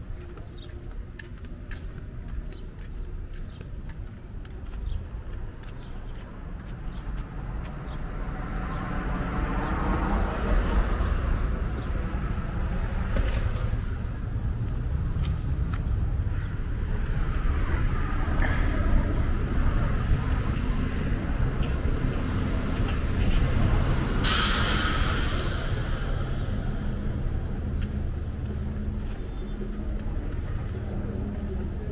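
Street traffic: motor vehicles running past, with a low rumble that swells about a third of the way in. Near the three-quarter mark there is a short, loud burst of hissing.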